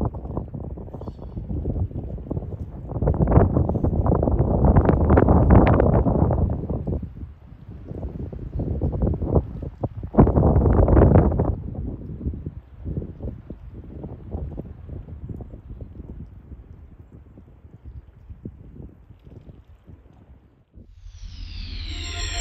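Wind buffeting the microphone in irregular gusts, loudest from about three to seven seconds in and again around ten to twelve seconds in. Music starts in the last second.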